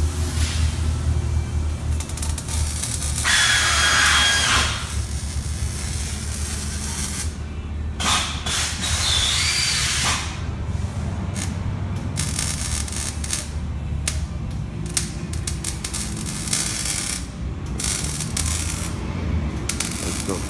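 Power cutting tool working through the car's exhaust pipe for a muffler delete, throwing sparks. It runs in bursts, the loudest about three seconds in and another about eight seconds in, over a steady low hum.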